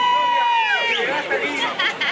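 Concert crowd shouting and cheering. Several long, held high-pitched cries end about a second in, followed by a jumble of excited voices.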